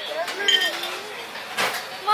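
Quiet voices, then a single sharp metallic click about one and a half seconds in, as the metal flip lid of a glass syrup dispenser snaps shut.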